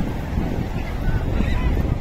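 Sea surf washing onto the beach with wind buffeting the microphone, a steady low rumble, with a few faint short calls on top.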